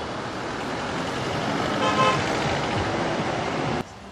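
Road traffic passing, with a vehicle horn sounding briefly about two seconds in. The traffic sound drops away suddenly near the end.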